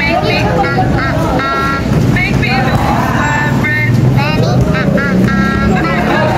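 Volleyball players shouting and calling out to one another in short, high yells through the rally, over a steady low hum.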